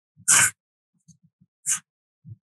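A short, sharp breath noise from a person, followed by two brief, fainter hissy sounds.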